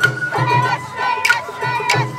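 Sawara-bayashi festival music: a bamboo flute holds and wavers over steady taiko drum strokes, with a crowd of dancers' shouted calls rising over it.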